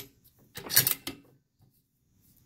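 The bolt of a Savage Model 10 bolt-action rifle pushed forward and closed over a spent cartridge case: a click at the start, then a short cluster of metal-on-metal clicks and sliding about half a second to a second in.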